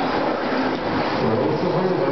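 Steady, echoing din of an indoor RC dirt-track hall during an electric RC truck race, with faint voices mixed in.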